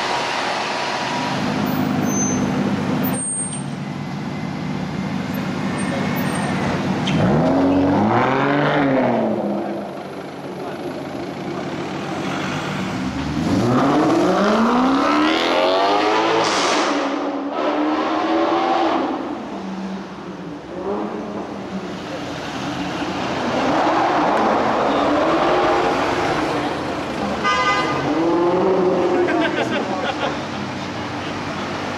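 Supercar engines revving in slow city traffic, the engine pitch rising and falling several times over a steady wash of traffic noise.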